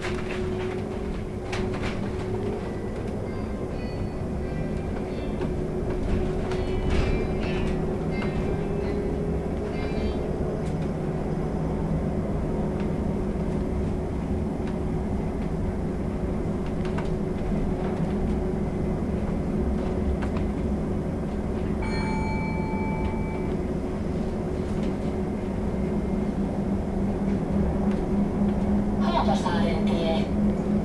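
Cabin of a VDL Citea SLE-129 Electric bus on the move: steady road and tyre rumble with the electric drive's hum, its pitch rising slightly over the first ten seconds. A short electronic beep sounds a little past twenty seconds in.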